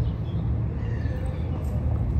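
A steady low outdoor rumble, with faint voices in the background.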